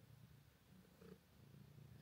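A domestic cat purring faintly while it is being stroked.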